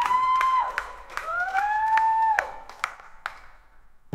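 Clapping and cheering: scattered handclaps and three high, held 'woo'-like calls that rise and fall back, over a noisy haze. It all fades away near the end.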